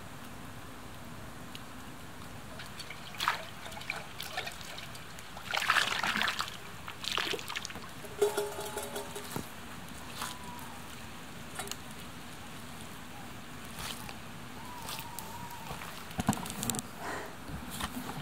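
An owl calling faintly: a short call of several held tones about eight seconds in, then fainter single notes later on. Scattered scrapes and clicks, loudest around six seconds, come between the calls.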